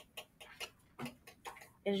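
Ballpoint pen writing on lined notebook paper: a handful of short, irregularly spaced ticks and scratches as letters are written.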